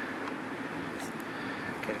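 Steady low background hum with a couple of faint clicks about a second in, as multimeter probes are worked against a charge controller's terminals.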